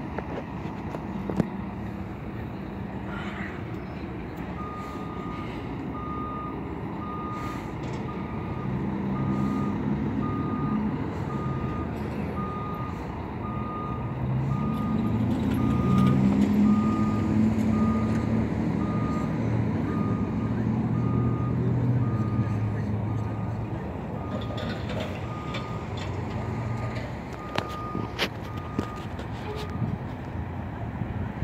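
Tour bus's reversing alarm beeping about once a second, starting a few seconds in, over the bus's engine running, which grows louder in the middle as the bus backs into a parking spot.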